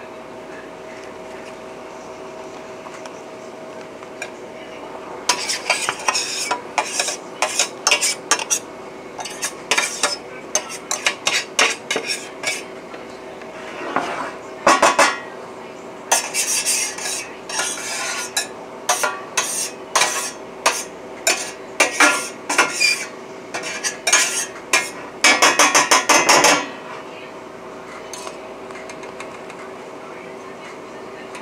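Brittle pieces of freeze-dried egg being scraped and tipped off metal freeze-dryer trays into a plastic zip bag: quick runs of clicks, scrapes and rattles starting about five seconds in and stopping near the end, over a steady hum.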